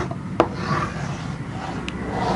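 Chalk scraping along a chalkboard as straight lines are drawn, with a sharp tap of the chalk about half a second in and another near the end.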